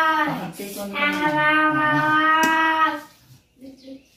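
A child's voice humming long, steady notes. One ends just after the start, and a second is held for about two and a half seconds.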